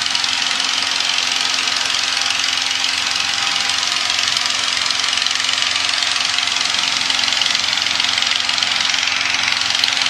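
A balloon inflator fan's petrol engine running steadily: a constant loud rushing roar with a low steady hum underneath.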